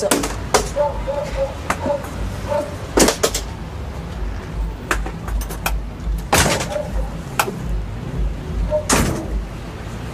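Several sharp knocks or bangs, a few seconds apart, over a low steady rumble.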